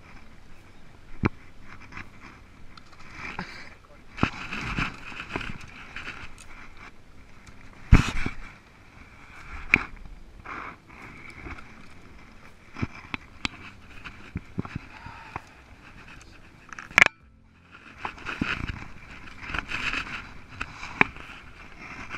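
Bare branches and twigs scraping, snapping and knocking against an aluminium bass boat and its gear as the bow is pushed into brush along the bank, with irregular rustling and sharp knocks, the loudest about eight seconds in and another near seventeen seconds.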